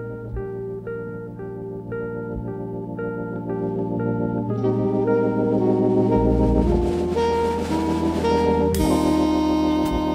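Instrumental jazz recording: a repeating plucked electric-guitar figure over organ and electric bass. About halfway through, drums and cymbals come in and the band grows fuller and louder, with a cymbal crash near the end.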